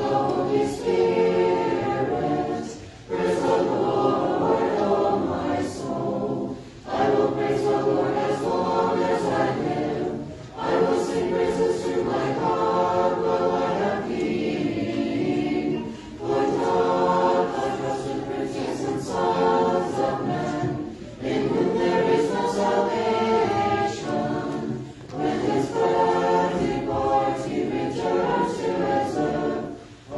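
Church choir singing Orthodox liturgical chant a cappella, in phrases broken by short pauses every few seconds.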